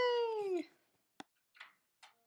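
A woman's drawn-out, high "yaaay", sliding slightly down in pitch and ending about two-thirds of a second in. A faint click and soft rustles follow.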